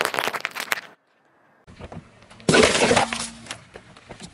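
Cherry tomatoes bursting under a rolling car tyre, a dense crackle that stops about a second in. After a short silence, a loud crunch lasting about a second as the tyre flattens a wrapped cardboard gift box.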